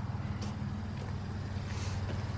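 2016 GMC Canyon pickup's engine idling, a steady low rumble, with one light click about half a second in.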